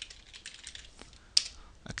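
Computer keyboard typing: a quick run of key clicks as a name is typed, with one sharper, louder click about a second and a half in.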